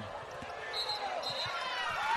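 A basketball being dribbled on a hardwood court: a few scattered low thumps over a faint background of arena voices.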